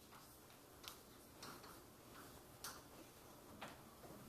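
Faint chalk taps and scratches on a blackboard while an equation is written: a few sharp, irregularly spaced clicks.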